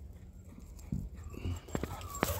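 Footsteps of a person walking through grass: a few soft, uneven thuds from about a second in.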